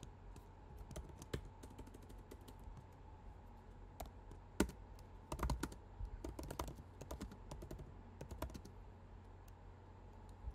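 Faint computer keyboard typing: scattered keystroke clicks, sparse at first, then a quicker run of keys in the middle as a line of code is typed.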